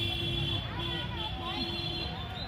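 Voices of a crowd gathered outdoors, with a steady high-pitched tone over them that breaks off and starts again a few times.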